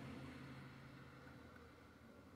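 Near silence: faint room tone with a low steady hum, slowly fading.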